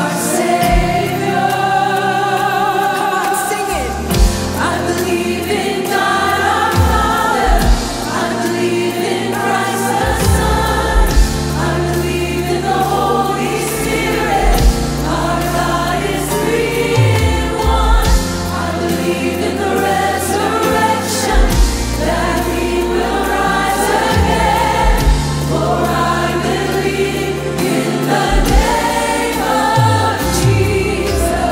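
Church worship choir singing a hymn with a woman leading, over band accompaniment with a steady bass line and drum strikes.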